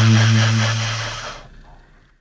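1967 Selmer Mark VI tenor saxophone holding a low, breathy note that fades out about a second and a half in.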